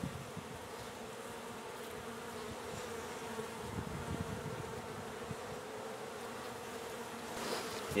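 Honey bees of an opened hive buzzing: a steady, even hum.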